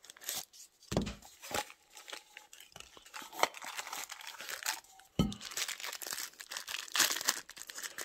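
Packaging being handled: a piston kit worked out of its cardboard tube and paper wrap, then out of a crinkling plastic bag, in short irregular rustles and crackles.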